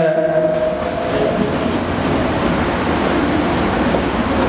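A man's voice draws out one long, steady note for about a second and a half, then fades out. A loud, steady rushing noise runs underneath and carries on alone after the note ends.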